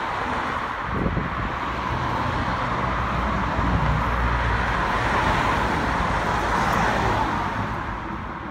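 Road traffic noise from a car passing on the nearby road, a rushing tyre-and-engine sound that builds gradually and fades away near the end.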